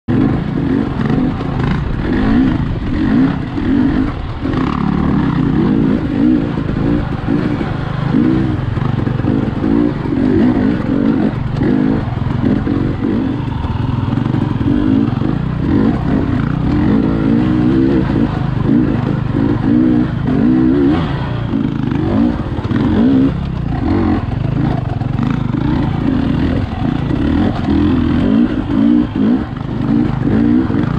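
Dirt bike engine running under constantly changing throttle, its pitch rising and falling as it picks over a rocky trail, with frequent knocks and clatter from the bike.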